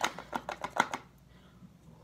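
Makeup powder container handled and tapped: a quick run of light clicks and taps over about the first second.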